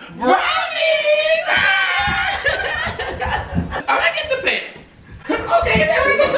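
People's voices laughing and calling out, without clear words.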